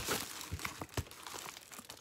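Quiet handling noises from a package being picked up and moved: faint rustling with a few light knocks about half a second apart.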